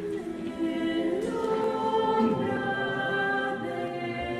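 Background music: a choir singing with long held notes and slow changes of pitch.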